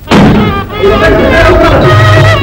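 Indian film music starting abruptly with a loud percussive crash, followed about a second in by sustained melody lines over a low drone.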